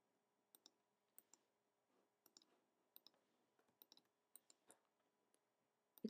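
Faint computer mouse button clicks, irregularly spaced and often in quick pairs, over near silence.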